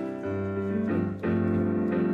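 Digital piano playing slow, sustained chords, with a low bass note entering about a quarter second in and the chord changing about every half second to second. It is the instrumental introduction to a worship song, before the singing comes in.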